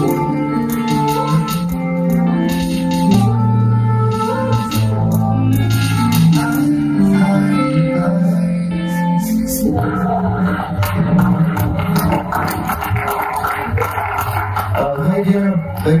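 Synthesizer music played on a keytar: held, organ-like chords over deep bass notes that change every second or so. About ten seconds in the sound turns denser and busier.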